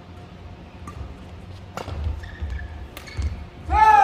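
A few sharp taps and low thuds in a large badminton hall. Near the end a loud shout breaks in suddenly, its pitch falling.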